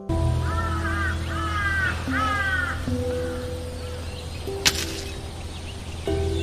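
A crow cawing three times, harsh falling calls in quick succession, over soft background music, with a short sharp click a little later.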